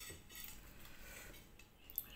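Faint rustling handling noise, then a single sharp clink of metal cutlery against a ceramic plate near the end as the plate is picked up.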